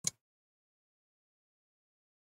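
Silence, broken only by one very short, soft noise right at the start.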